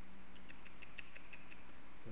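A quick run of about ten sharp clicks over a second and a half, from a computer mouse or keyboard being clicked to step through an animation.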